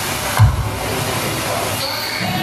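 Nightclub sound system playing the performance track amid crowd noise, heard as a dense noisy wash with one deep bass thump about half a second in.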